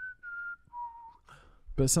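A person whistling a short falling phrase: two high notes, then a lower one, over about a second.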